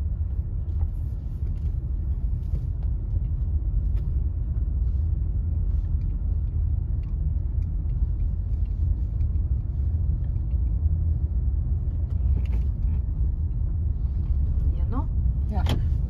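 Steady low rumble of a manual-transmission car driving slowly, heard from inside the cabin.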